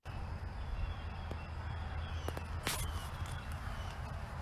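A steady low hum with a faint haze over it, broken by a few faint clicks around the middle.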